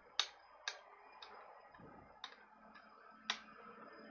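Faint, sharp clicks from a computer mouse, about six of them spaced roughly half a second apart, as a list is scrolled.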